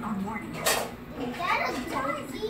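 Children's voices talking and playing, with a short noisy burst less than a second in.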